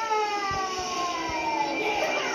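A whistle-like sound effect from a television show's soundtrack, one long tone gliding steadily down in pitch, heard through the TV speaker. Music begins near the end.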